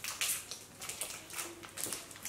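Crinkling of a plastic candy-bar wrapper as it is handled and pulled at in an attempt to tear it open by hand: a run of soft, irregular crackles.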